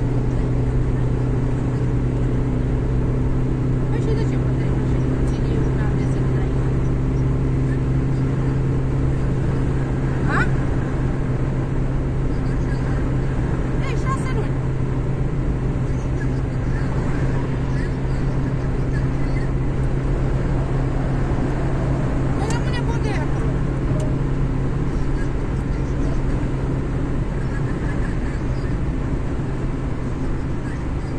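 Steady road and engine drone heard inside a car's cabin while driving at motorway speed, with a constant low hum.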